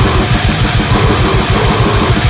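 Grindcore band recording: loud, dense, distorted band sound over fast, relentless drumming, with about ten even kick-drum hits a second.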